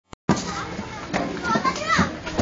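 Young children's voices, high-pitched babble and calls while they play, over steady background noise.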